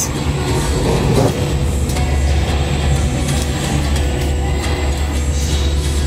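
Low, steady rumble of a gondola lift cabin and the station's machinery as the cabin starts rolling slowly through the station after its door has closed, setting in about a second in.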